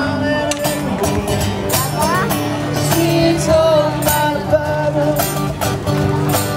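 Street musician's song: a man singing to a strummed acoustic guitar in a steady rhythm.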